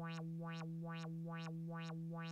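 Native Instruments Massive X software synth holding one note. Its filter cutoff is swept open again and again by an envelope set to loop gate, which keeps repeating the attack stage. The result is a rhythmic pulsing brightness, about three sweeps a second.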